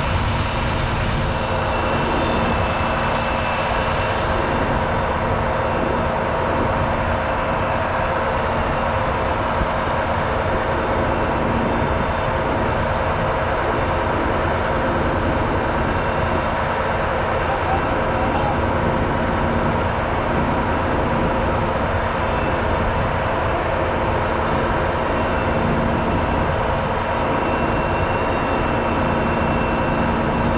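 A heavy diesel truck engine running steadily, a constant hum with several held tones that never changes in pitch or level.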